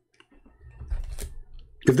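A few sharp clicks at a computer, like a keyboard or mouse being worked, over a low rumble from about half a second in. A man starts speaking at the very end.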